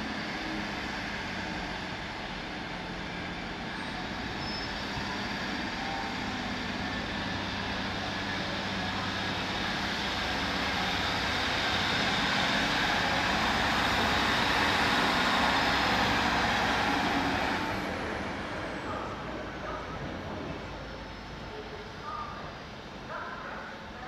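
Class 153 diesel railcar moving off and passing, its engine and wheels on the rails building gradually to their loudest, then dropping away fairly sharply and fading as it draws off into the distance.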